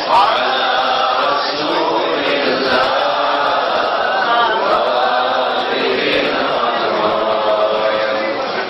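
Melodic chanted Quran recitation (tajwid) in a man's voice, with several voices overlapping at once.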